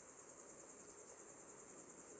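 Near silence: room tone with a faint, steady high-pitched pulsing trill.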